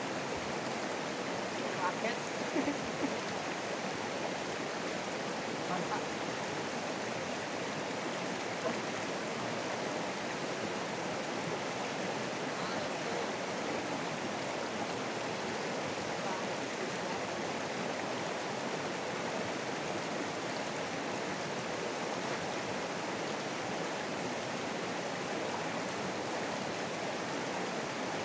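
Shallow, rocky river rushing over stones: a steady, even water noise.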